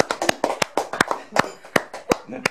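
Several people clapping their hands in a steady rhythm, about three claps a second, with lighter off-beat claps in between.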